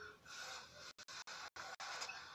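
Faint slurping of instant ramen noodles, a soft noisy sucking sound broken by several short gaps.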